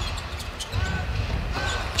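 Game audio from a basketball broadcast: a ball being dribbled on a hardwood court over a low arena rumble, with two short squeaks, one about a second in and one near the end.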